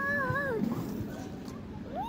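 A young child's drawn-out, high-pitched vocal "ooh" that wavers and slides down in pitch about half a second in, then a brief rising-and-falling call near the end.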